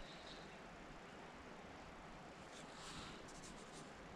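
Faint ticking of a spinning reel being cranked to reel in the line, most noticeable about three quarters of the way through, over a soft outdoor hush.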